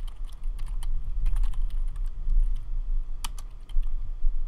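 Typing on a computer keyboard: a run of irregular key clicks, with one louder keystroke a little over three seconds in as the Enter key submits a terminal command. A steady low hum runs beneath.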